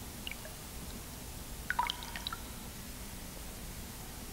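Low, steady hiss and hum, with a short run of faint clicks and pings about two seconds in.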